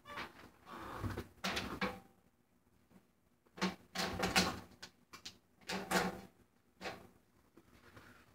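A new snare drum head being fitted onto the snare shell by hand: irregular knocks and plastic clatter as the head and its rim are set in place. Several knocks in the second half leave a brief low ring from the drum, with a pause of about a second and a half before them.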